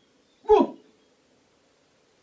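A woman's voice giving one short yelp that drops in pitch, imitating a small dog's bark for a toy dog, about half a second in.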